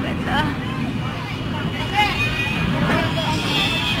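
Wind buffeting the microphone with a steady low rumble, under background voices and chatter.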